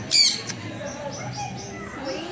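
A parrot gives one brief, loud squawk just after the start, over faint repeated chirping of other birds and a murmur of people talking.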